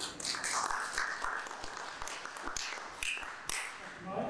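Audience applause, dense at first and thinning to a few separate claps near the end.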